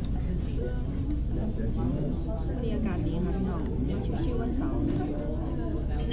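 Indistinct voices talking over a steady low hum of room noise, typical of a busy restaurant dining room.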